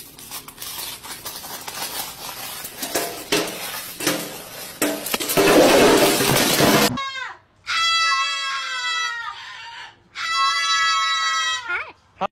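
Several seconds of loud, rough noise, then a bird calling twice: each call is long and held on a steady pitch after a quick downward slide.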